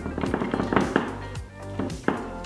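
Background music with a steady beat: sustained instrumental tones over regularly recurring drum hits.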